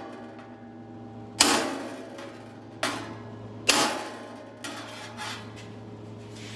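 Hammer striking a rounded-end chisel tool held on a sheet-metal panel, setting a flute groove in it: three sharp metallic strikes a second or so apart, each ringing briefly, then a lighter tap.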